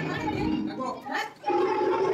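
People's voices in a room, with a short spoken word about halfway through. About halfway through, a steady, long-held pitched sound starts and carries on.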